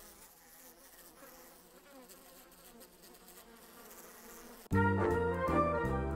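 Cartoon sound effect of houseflies buzzing, a faint steady hum. About four and a half seconds in, loud orchestral music cuts in suddenly.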